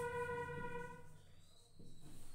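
Whiteboard marker squeaking as a word is written: a steady squeal that stops about a second in, then a fainter, higher squeak near the end.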